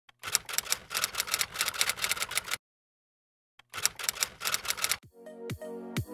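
Typewriter key-clicking sound effect in two quick runs with about a second of silence between them, then electronic music with a beat comes in about five seconds in.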